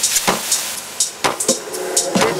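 Tech house track from a DJ mix, in a breakdown: a steady pattern of hi-hat and percussion hits carries on with the kick drum and deep bass dropped out.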